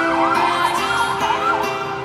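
A siren-like wail, rising and falling about three times a second, layered over held synth chords in a trap track's intro.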